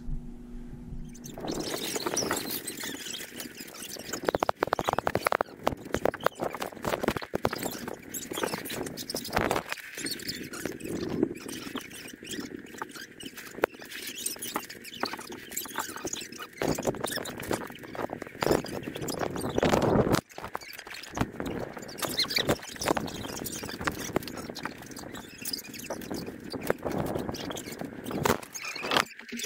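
Wooden toy train track and small toy trains clicking and clattering as they are handled and pushed on a hardwood floor, in irregular small knocks.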